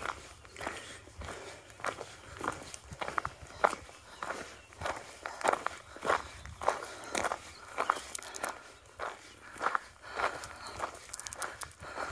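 A hiker's footsteps on a gravel path, about two steps a second in an even walking rhythm.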